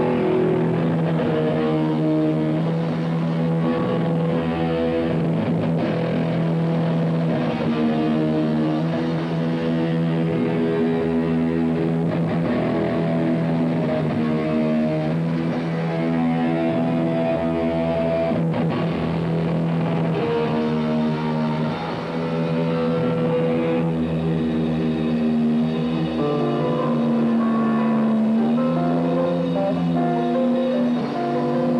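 Live rock band playing a song, electric guitars leading over bass and drums, loud and unbroken.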